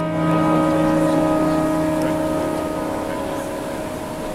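A piano chord struck and left to ring, its held notes slowly fading, over a steady haze of arena crowd noise.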